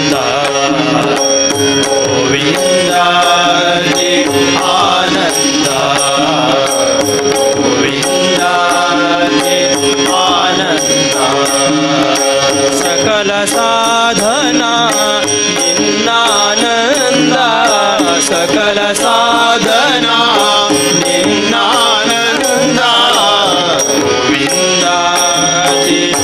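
Indian devotional bhajan performed live: a singer's ornamented melodic line, without clear words, over a steady harmonium and tabla accompaniment.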